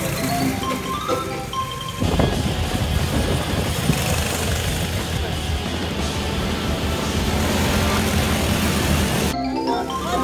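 Light mallet-percussion background music for about two seconds, then a sudden cut to the engines of small go-karts running as they race past on the dirt track. The music comes back near the end.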